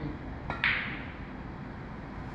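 Billiard cue striking the cue ball, then the cue ball hitting the object ball: two sharp clicks in quick succession about half a second in, the second louder and ringing briefly.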